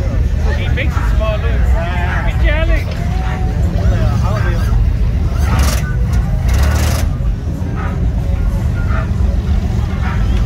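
Steady low rumble of lowrider car engines idling and cruising on the street, with bystanders' voices. A little past halfway come two short hissing bursts.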